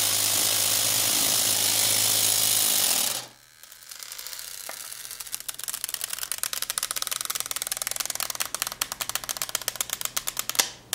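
A 12-volt car air compressor converted into a vacuum pump runs steadily, pulling a vacuum on a plastic bottle and crushing it. It cuts off suddenly about three seconds in. Afterwards a rapid, fine clicking starts and grows denser.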